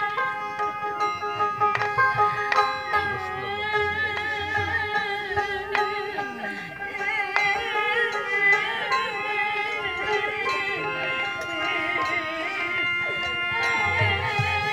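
Live Bengali devotional kirtan music. Steady held tones run under a wavering melody line, with scattered sharp percussion strikes.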